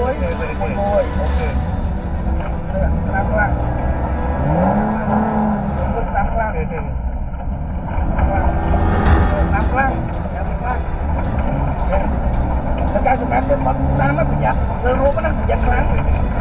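Rally car's engine and tyres running on a dirt track, heard from inside the cabin as a loud steady rumble. Voices talk over it at intervals, and from about halfway through there are sharp ticks several times a second.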